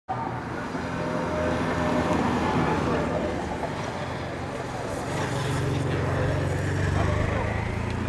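Escort motorcycle engine running at low speed as it passes close by, growing louder in the second half and peaking about seven seconds in, with voices around it.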